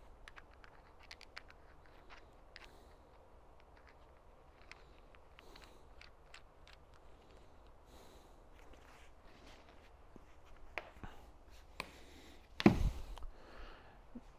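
Hydraulic hose fittings being unscrewed by gloved hands: faint, scattered clicks and scrapes of the threaded metal parts. A single loud knock comes near the end.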